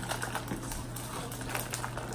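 Plastic MRE pouch crinkling and crackling as it is handled, a run of small irregular clicks and rustles.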